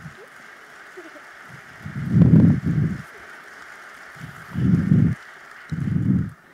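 Audience applauding in a large hall, a steady clatter of clapping. Three dull thumps and rustles close to a microphone come about two seconds in, around five seconds and at the end.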